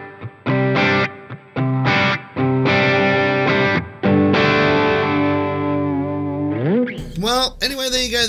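Electric guitar chords played through a Sonicake Matribox II multi-effects unit with its Church reverb set very wet: several short chord stabs, then a last chord left ringing for about two seconds. Near the end a man's voice comes in with a rising, wavering sound.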